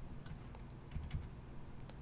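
Faint, scattered keystrokes on a computer keyboard, a few separate clicks over a low steady hum.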